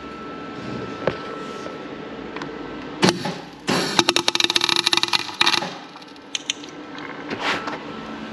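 MIG welder tack-welding a steel plate to the spider gears inside a rear differential carrier to lock it. A short crackling zap comes about three seconds in, then a crackling weld of nearly two seconds, then two brief zaps near the end.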